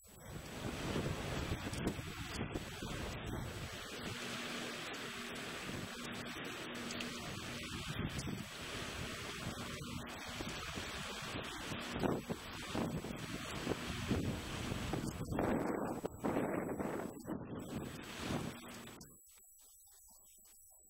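Wind buffeting the microphone over choppy lake water, with waves slapping and splashing around a capsized small sailing dinghy. The noise rises and falls in gusts and cuts off suddenly near the end.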